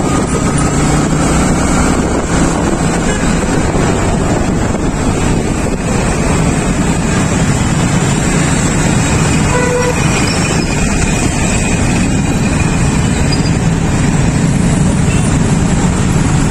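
Steady motorcycle riding noise in dense city traffic: engine and road noise, with a few short vehicle horn toots around the middle.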